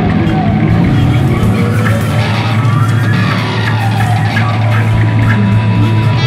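Heavy stoner/doom rock: distorted electric guitar over a sustained low bass note, with pitches sliding up and down in the middle.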